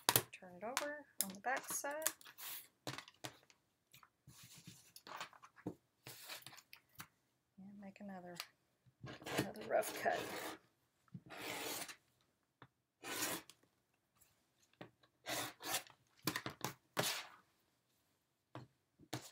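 Rotary cutter rolling through fabric against a cutting mat in a series of short strokes, with the fabric rustling as it is handled and smoothed between cuts.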